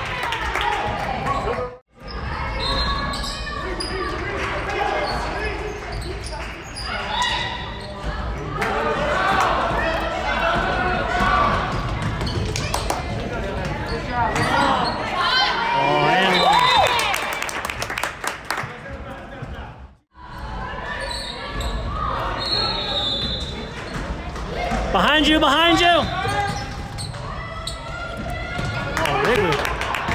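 Basketball game sound on a hardwood gym court: the ball bouncing, with players and spectators calling out across the gym. The sound drops out abruptly twice, about 2 seconds in and again about 20 seconds in.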